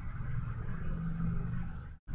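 A steady low rumbling hum with no speech, cut by a brief total dropout of sound at the very end.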